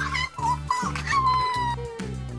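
Several short, high squeaky voice-like squeals, then one long slowly falling squeal, over background music with a steady beat.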